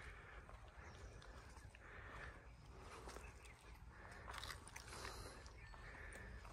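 Near silence: faint outdoor ambience with a few soft clicks.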